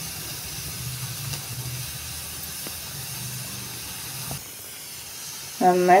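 Gas stove burner hissing steadily under an empty kadhai as it heats, with a low hum coming and going underneath; the sound shifts slightly a little past four seconds in.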